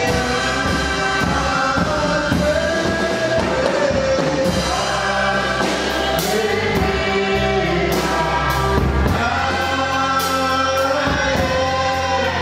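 A group of voices singing a gospel song together, carried by a steady bass line and a regular drum beat.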